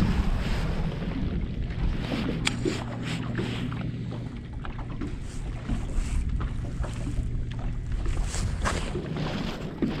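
Wind on the microphone and water lapping at a bass boat's hull. A steady low hum runs for about the first four seconds and then fades. Scattered light clicks come from a baitcasting reel as a tail-spinner lure is cast and reeled in.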